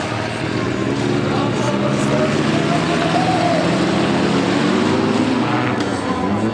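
Several race car engines running and revving together, their pitches overlapping and rising and falling as the cars accelerate and slow, louder from about a second in.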